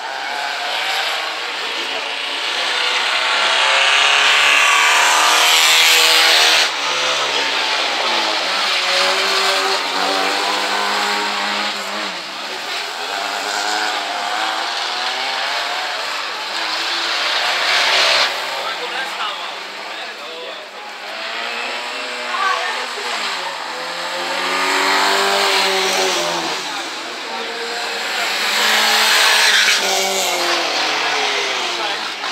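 Rallycross cars' engines revving hard and dropping back with gear changes as they drive the loose-surface track, the pitch climbing and falling several times. The sound cuts off suddenly about seven seconds in and carries on from a new scene.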